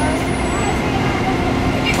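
City street traffic noise: a steady low rumble with a constant droning hum from passing or idling road vehicles, under faint voices.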